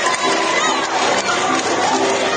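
Noisy crowd of spectators talking and shouting over one another, with dance music playing underneath.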